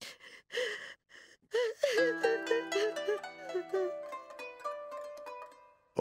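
A woman sobbing in short breathy gasps, then background music of plucked strings comes in about two seconds in and fades toward the end.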